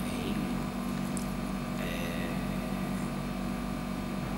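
A steady low hum of room noise, with faint voice sounds now and then.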